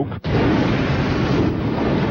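Rushing water surging with a deep rumble, starting suddenly just after the start and running on loud and steady: the sound of a breaking levee's floodwater or a crashing wave.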